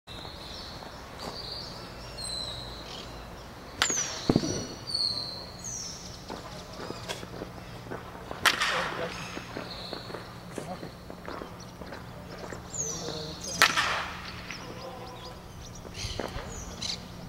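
Baseball bat hitting pitched balls in a batting cage: three sharp cracks about five seconds apart. Between them, short falling bird chirps and a steady low hum.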